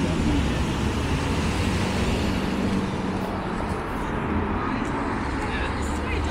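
City street traffic noise: a steady mix of passing vehicles with a constant low engine hum, and faint voices in the background.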